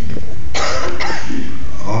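A person coughing twice, two short coughs about half a second apart.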